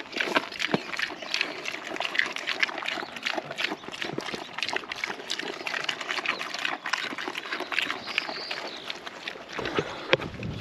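Young Idaho pasture pigs eating pelleted feed from a rubber feed pan: a dense, irregular run of crunching and chomping.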